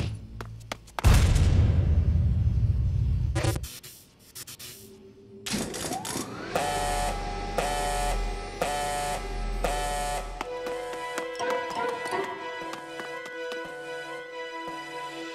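Cartoon soundtrack: a sharp knock, then a low rumble for about three seconds. After a short lull, a rising tone leads into music with four loud blaring pulses about a second apart, each with a deep throb, before the music carries on.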